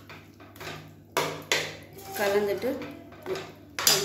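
Stainless steel slotted spoon stirring a thick curry in a metal pressure cooker, with sharp metal clinks of spoon against pot: two close together a little over a second in, and one more near the end.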